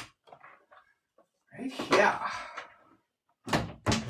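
Knocks and thuds of someone rummaging for another deck of cards, with a woman's voice about halfway through and a short "right" near the end.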